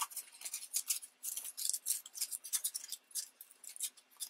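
Crinkled momigami paper crackling and rustling in quick, irregular bursts as it is handled between the fingers.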